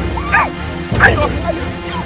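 Short yelping cries and an 'aiya'-like exclamation from women fighting, one about a third of a second in and a louder one about a second in, over background music.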